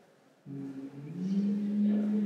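A man's drawn-out hum or held 'mmm' filler sound. It starts about half a second in, rises a little in pitch about a second in, and is then held steady.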